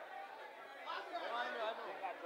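Faint background chatter of people talking, with a voice a little clearer about a second in.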